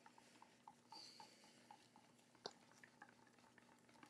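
Near silence, with faint, regular soft ticks about four a second from a stir stick working clear resin in a plastic cup, and one sharper click about two and a half seconds in.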